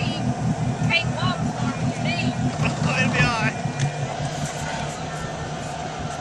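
Ski boat engine running steadily at low speed, a low even hum, with high-pitched voices calling over it in the first half.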